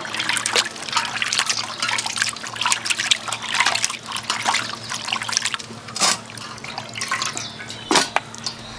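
Wet ground paste being scraped off a stone grinding slab by hand and gathered into a small plastic bowl: irregular wet squelching and scraping, with a sharper click about six seconds in.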